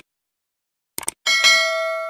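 Subscribe-button animation sound effect: a short mouse click about a second in, then a bright notification-bell ding that rings on and slowly fades.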